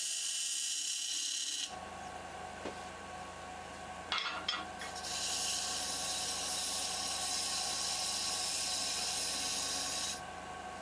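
Sandpaper hissing against the inside of a redwood bowl as it spins on a wood lathe, over the lathe motor's steady hum. The hiss drops away after about two seconds, a short knock comes about four seconds in, and the hiss starts again and runs steadily from about five seconds.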